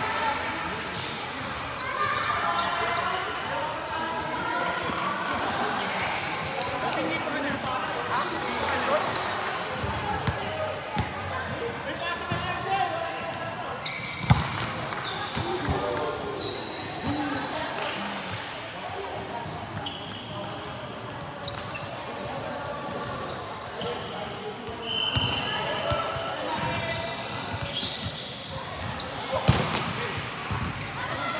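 Indoor volleyball rally in a large sports hall: players' voices calling and chattering, with sharp slaps of the ball being struck, the loudest about 14 seconds in and again near the end.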